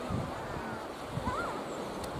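Sea surf washing on the shore, a steady rushing noise, with wind buffeting the microphone in low gusts just after the start and again about halfway through.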